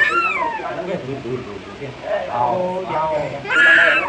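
A toddler crying and wailing in sobbing bursts, with a loud, high wail near the end.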